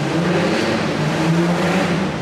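A motor vehicle running close by: a steady low engine note with a rushing sound that swells about halfway through.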